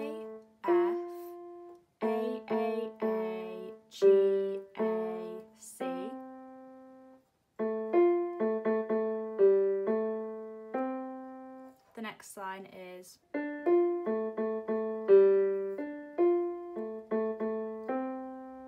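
Casiotone electronic keyboard on its grand piano voice, playing a slow single-note right-hand melody with runs of repeated notes. The melody comes in three phrases, each struck note dying away, with short pauses between them.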